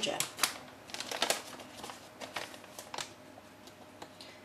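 Plastic packet of ground ginger crinkling and clicking as it is picked up and opened. It gives a quick, irregular run of sharp crackles that thins out towards the end.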